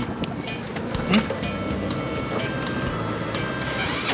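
Tuk-tuk running along a road, its engine and road noise heard from the passenger seat, under background music with a steady beat. A short "hmm" from a passenger about a second in.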